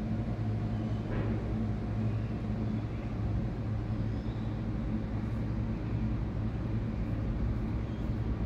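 A steady low mechanical hum, as of a motor or engine running, holding level throughout.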